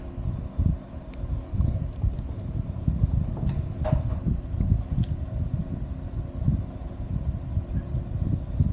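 Low, irregular rumbling over a steady low hum, typical of air buffeting or handling noise on the microphone, with a couple of faint clicks.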